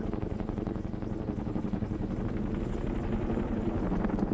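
Twin-rotor transport helicopter running close by, its rotors beating in a fast, steady chop.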